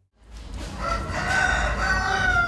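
A rooster crowing: one long, drawn-out crow beginning a little under a second in, over a low steady background rumble.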